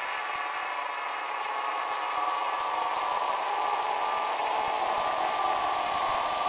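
Eerie horror sound-effect drone: many steady ringing tones sounding together over a hiss, held at an even level without a beat.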